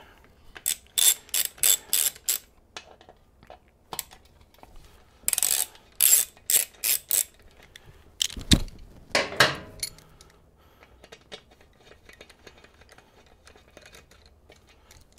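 Hand ratchet turning a 5/32-inch Allen socket on a motorcycle side-cover screw, its pawl clicking in short runs of about three clicks a second as the screws are backed out. A single heavy thump about two-thirds through, then faint ticks.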